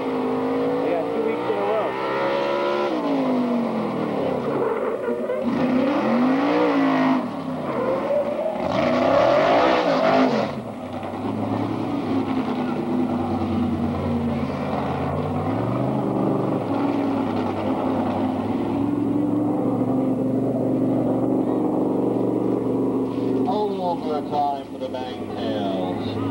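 Engine of a motorized fire-drill racing rig revving up and down in several long sweeps through the first ten seconds or so, then settling to a steady drone.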